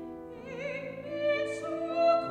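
Operatic soprano voice entering about half a second in, singing with a wide vibrato over grand piano accompaniment, and growing louder toward the end.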